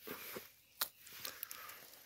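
Faint rustling of movement through forest-floor undergrowth, with one sharp click a little under a second in.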